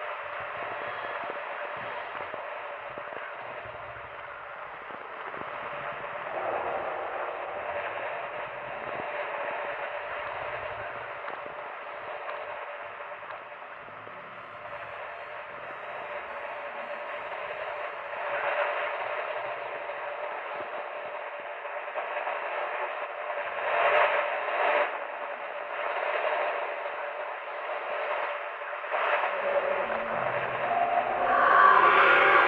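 Spooky radio sound loop, thin and tinny like an old radio set, mostly hissy noise with no clear words. It swells louder several times in the last third.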